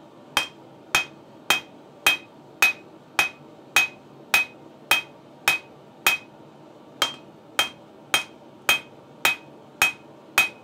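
Hand-hammer blows on a glowing bar of tool steel on a small steel anvil, at a steady pace of about two a second, as the end is drawn out into a taper. Each blow carries a short, two-note ring, the anvil's ring partly deadened by magnets on it. There is a pause of about a second roughly six seconds in, then the blows resume.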